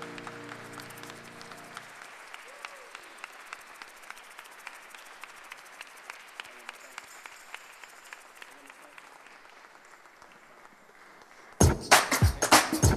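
The last held chord of a gospel song fades away in the first two seconds. Quiet applause follows and thins out over the next several seconds. Near the end a loud, strongly beating music track starts up.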